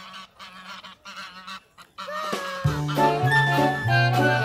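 Domestic geese giving faint honks in the first half. Music with a stepping bass line starts a little over halfway through and carries on.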